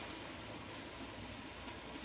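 Faint, steady hiss of a pressure canner venting steam, at the stage before the weight is set on the vent.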